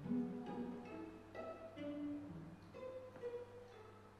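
String quartet of two violins, viola and cello playing a sparse passage of separate short notes that grows quieter toward the end.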